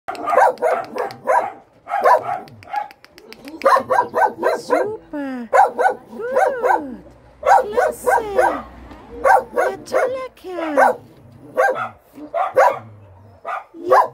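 Dogs barking in quick volleys throughout, mixed with a few higher yelps that slide down in pitch.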